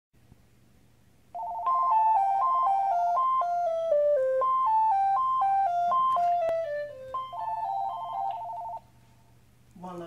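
Cordless phone ringing with an electronic ringtone, starting about a second in. It plays a warbling two-note trill, then a run of beeping notes that step down in pitch, then the trill again, and stops shortly before the end.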